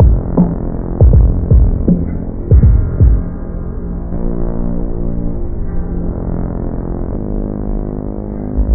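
Hardcore boom bap hip-hop instrumental with a muffled sound and no highs: heavy kick and snare hits for about the first three seconds, then the drums drop out and only a sustained low synth chord keeps playing.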